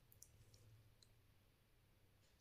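Near silence: a few faint ticks in the first second, from salt pinched by hand and landing on paneer cubes on a steel plate, over a low steady hum.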